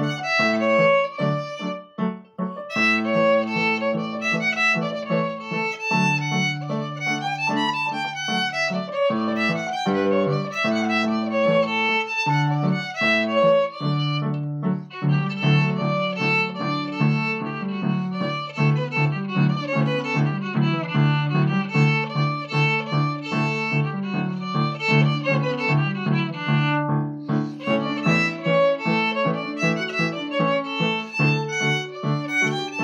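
Solo fiddle playing Irish reels, a quick bowed melody over held lower notes, with short breaks about two seconds in and near the end.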